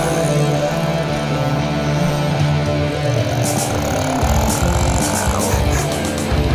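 Instrumental passage of heavy rock: sustained distorted guitar and bass, with cymbal hits coming in about halfway.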